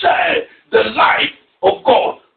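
Speech: a voice talking in short phrases with brief pauses.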